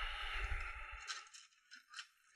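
Handling noise of model-kit parts in a cardboard box: a rustling scrape with a low bump for about the first second, then a few faint light clicks as a plastic sprue is picked up.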